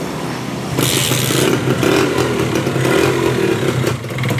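Kawasaki Ninja 150 R's two-stroke single-cylinder engine running just after a kick start. A brief clattering burst comes about a second in, then it runs steadily and a little louder.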